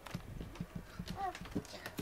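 Scattered light knocks and bumps of movement on wooden furniture as cats step about the shelves and the handheld camera is moved. A short faint vocal sound, rising then falling, comes about a second in.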